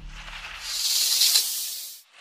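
A snake's hiss sound effect: one long, high hiss that swells about half a second in and cuts off at the end, over the last of a low music rumble fading out.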